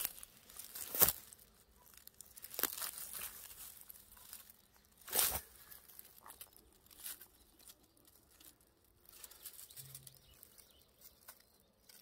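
Dry grass and twigs rustling and crackling as a large snake's body is pulled and dragged through them, with a few sharp snaps, the loudest about a second in and about five seconds in.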